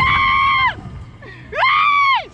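Two long, high screams from men riding a Slingshot reverse-bungee ride as it flings them into the air. The first holds steady and then slides down in pitch, breaking off under a second in. The second rises in pitch at its start about a second and a half in, holds, and slides down again at the end.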